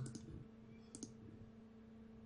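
Two faint computer mouse clicks, about a second apart, over a low steady hum.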